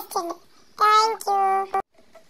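A child's high voice giving wordless sung notes: a brief one at the start, then two held, level notes about a second in.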